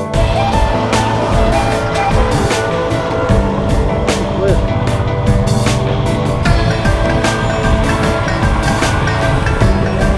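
Background music over a motorcycle riding on the road: the running of a Royal Enfield Himalayan's single-cylinder engine with road and wind noise, which comes in beneath the music right at the start.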